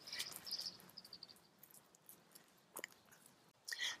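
Fingers dragging through loose garden soil to draw a shallow planting trench: faint scraping and crunching, mostly in the first second or so, then near quiet.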